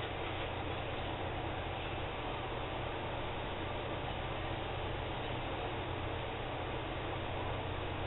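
Steady hiss with a low hum underneath: the background noise of the recording, with no distinct sound event.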